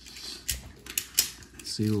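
Trading cards being handled on a tabletop: a few short sharp clicks and taps, the loudest a little past a second in.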